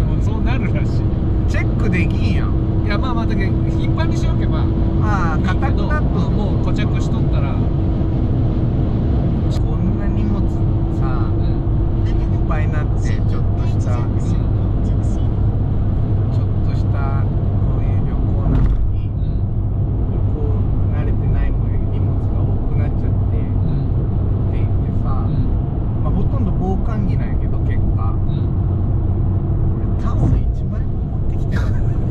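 Steady low drone of a Fiat 500's small four-cylinder engine and its tyres at expressway cruising speed, heard inside the cabin, with a steady hum through the first half. People's voices come and go over it.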